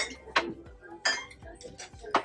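Ceramic dishes clinking against each other and against shelves: a few sharp, separate clinks with a brief ring, spread over two seconds.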